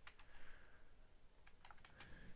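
Faint computer keyboard typing: a handful of separate keystrokes, with a few in quick succession near the end.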